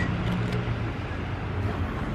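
Steady low rumble of road traffic, with a faint hum and no distinct events.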